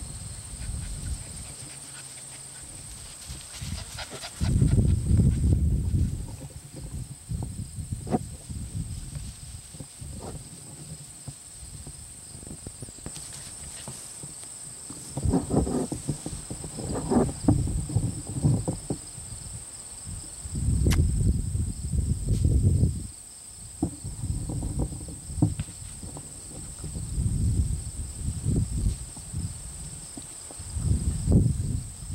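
German Shepherd puppies playing and scuffling on grass, with short growls and yips around the middle, amid repeated low rumbling bursts. A faint steady high whine runs underneath.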